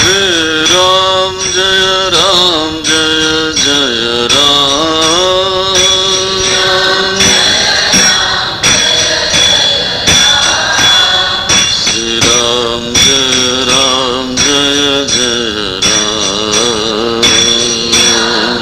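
Devotional chanting sung by a single voice, with jingling percussion struck in a steady beat about twice a second. The voice breaks off for a few seconds in the middle while the jingling keeps time, then resumes.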